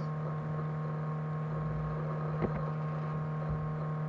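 Steady electrical mains hum picked up by the recording, one low tone with its overtones, with a single click about halfway through.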